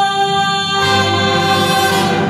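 Wind and brass band playing a Christmas carol in held chords, the harmony shifting and a low bass note coming in about a second in, with vocalists singing along.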